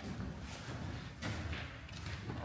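Footsteps on a bare concrete floor: a few soft, irregular thuds.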